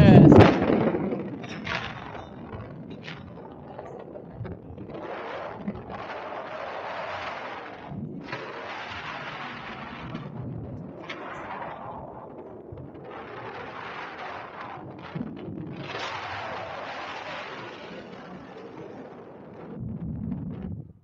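Wind buffeting the camera microphone in flight under a tandem paraglider, a rushing noise that surges in waves every few seconds. A loud blast of it comes right at the start, with a few short knocks between the gusts.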